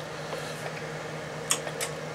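Steady hum and fan noise from a Heathkit SB-220 linear amplifier running on the bench, with two brief clicks about a second and a half in.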